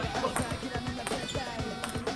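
Table tennis balls clicking on tables and paddles in quick, irregular succession, from play at several tables in a large sports hall, with background voices.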